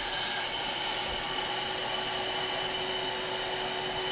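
Electric balloon inflator running steadily, blowing air through its hose into a balloon: an even hum with a rush of air.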